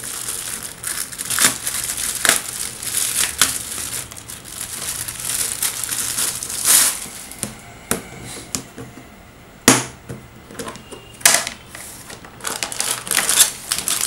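Clear plastic wrap crinkling and tearing as it is pulled off a hard plastic box, with a string of sharp plastic clicks and knocks from the box and its lid, the loudest about ten seconds in.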